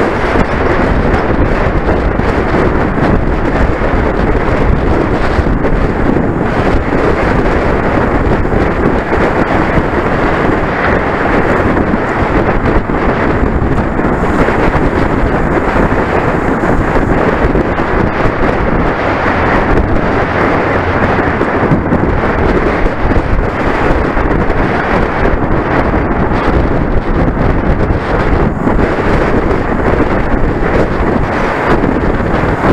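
Loud, steady wind buffeting on the microphone of a handlebar-mounted camera on a bicycle riding at speed, with road noise mixed in.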